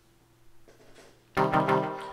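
Elektron Digitone FM synth sequence: a kick drum and a saw-wave dub techno minor chord stab hit together about halfway through, after a near-quiet start, and ring out.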